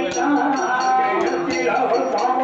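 Villu pattu singing: a male voice holds a long sung note over a steady jingling beat from the bells of the villu bow and the accompanying percussion, about four strokes a second.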